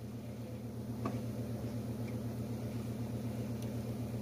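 A steady low hum, like a household appliance or electrical hum, with a faint click about a second in.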